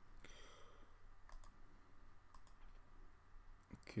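Faint computer mouse clicks, four of them about a second apart, over low background hiss.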